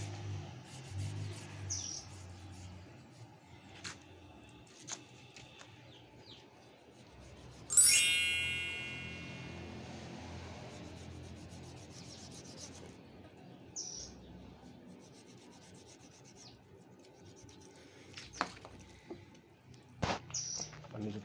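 Quiet rubbing and scraping of a knife cutting through a scalded pig's skin and fat, with a few short bird chirps. About eight seconds in there is a sudden loud ringing strike that fades over about two seconds.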